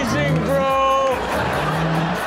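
Men's voices yelling and laughing in long, drawn-out cries over background music.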